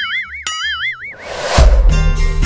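Cartoon-style comedy sound effect: a wavering, warbling tone for about the first second, then a rising whoosh, and background music with a deep bass comes in shortly before the end.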